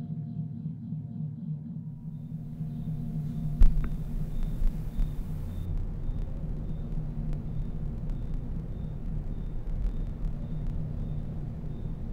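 Low, steady droning rumble from a film's opening soundtrack. A single sharp knock comes about three and a half seconds in, and a faint, even ticking at about two ticks a second runs on after it.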